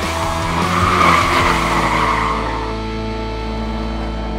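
Tyres of a Porsche 718 Boxster squealing as it corners on track, swelling about half a second in and fading away after about two seconds, over background music with sustained notes.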